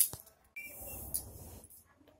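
A sharp click, then soft rustling and handling noise while a toddler is lifted up onto a lap, with a brief faint high tone near the start of the rustling.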